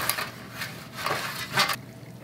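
A bare hand rubbing grease over a perforated metal baking pan: a few short scuffing and handling sounds against the metal.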